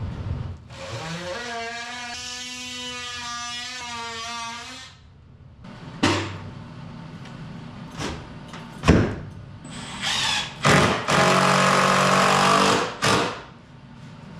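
Power drill driving screws into a plywood mounting board. It runs in one steady whine for about four seconds. After a few sharp knocks it runs again in several short, louder, rougher bursts near the end.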